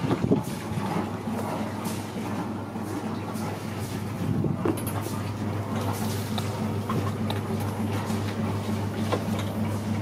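A 40 hp Yanmar marine diesel idling with a steady low hum, heard from aboard the boat, with scattered knocks and clicks of someone stepping aboard and moving into the cabin.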